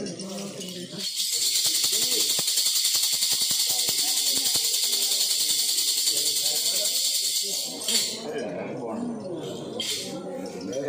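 Brass ritual jingle rattle shaken fast and continuously, a bright metallic jingling that starts about a second in and stops abruptly near the eighth second. Low voices murmur before and after it.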